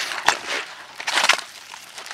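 A single sharp click about a quarter of a second in, with two short bursts of hissing, rustling noise, the second about a second in.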